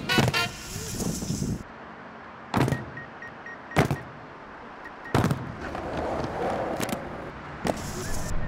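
Steady hum of road traffic from the highway below, broken by a few sharp knocks of a skateboard on a concrete ramp, spaced one to two and a half seconds apart.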